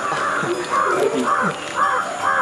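Crows cawing repeatedly, several harsh caws about half a second apart.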